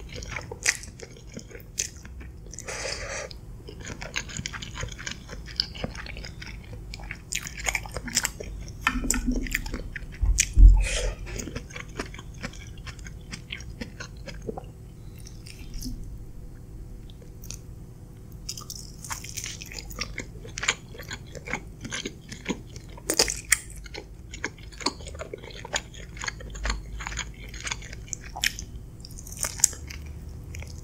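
Close-miked eating of creamy mushroom pasta and pan-fried chicken: noodles slurped in, then steady wet chewing with many small mouth clicks and bites. A single dull thump about a third of the way in is the loudest sound.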